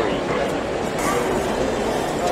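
Chatter of a crowd with an animal calling over it, yelping or barking.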